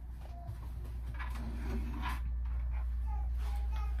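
Room tone: a steady low hum with a few faint, brief indistinct sounds.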